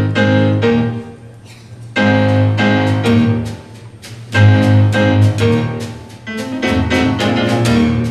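A traditional jazz rhythm section, led by piano, plays the introductory verse of a 1930 song. It comes in short repeated chord phrases about every two seconds, each one fading before the next begins.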